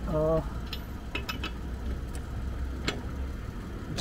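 A few light metallic clicks as lug nuts are fitted by hand onto a space-saver spare wheel during a roadside flat-tyre change, over a steady low engine hum.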